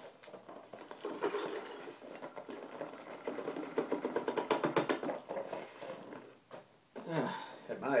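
Packing peanuts being poured and shaken out of a cardboard shipping box into a plastic garbage can: a continuous rustling clatter with many quick ticks, heaviest in the middle. A man's voice starts near the end.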